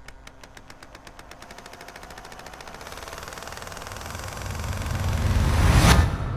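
Intro sound effect: rapid clicking that speeds up and builds into a swell, growing steadily louder and ending in a deep boom near the end.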